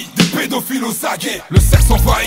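Hip hop track with rapped vocals over the beat. The deep bass drops out, then comes back in with a heavy hit about a second and a half in.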